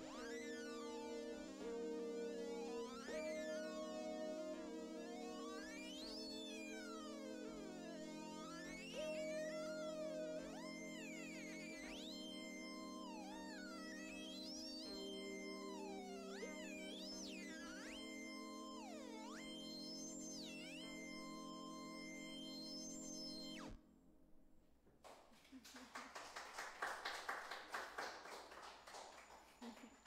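Roland keyboard synthesizer holding a sustained chord over a low drone, with high notes sliding up and down in pitch. The music cuts off suddenly about 24 seconds in and is followed by a few seconds of brief applause.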